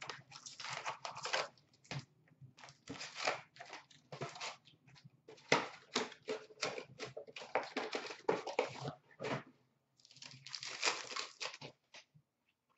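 Trading card packs being torn open by hand and the cards flipped through: a busy run of short crinkles, tears and papery slides of card against card and wrapper.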